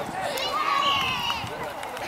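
High-pitched children's voices shouting and calling out across an outdoor football pitch, with one loud, drawn-out shout about half a second in.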